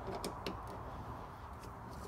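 A few faint, scattered clicks of a screwdriver turning a hose clamp on a plastic engine intake pipe as it is tightened.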